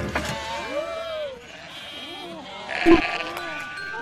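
Cartoon sheep bleating, a few rising-and-falling calls, followed by a brief loud sound about three seconds in.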